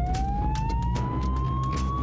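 A siren-like tone rising slowly in pitch and then levelling off, over a steady low rumble with scattered clicks.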